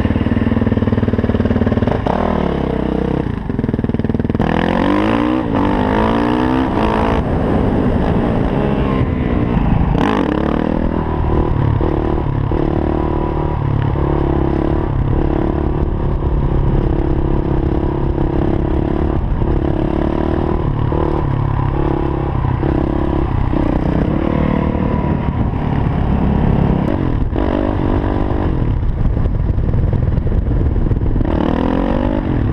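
Yamaha WR450F supermoto's single-cylinder four-stroke engine under way: it pulls away and revs up through several gear shifts in the first ten seconds. It then holds a steady cruise, and the revs change again near the end.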